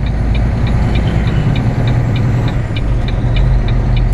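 Semi truck's diesel engine running steadily, heard from inside the cab, with a light regular ticking at about three ticks a second.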